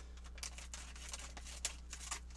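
Foil LEGO minifigure blind bag crinkling faintly as it is handled, a scatter of light crackles with a sharper one about one and a half seconds in.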